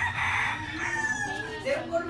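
A loud animal call, harsh at first and then a long held tone falling slightly in pitch, lasting over a second. A voice follows near the end.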